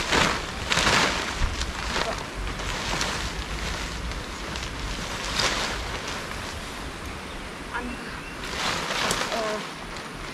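Tent flysheet fabric rustling and swishing as it is shaken out and thrown over a small dome tent, in several surges, the loudest at the start and near the end, over a low wind rumble on the microphone.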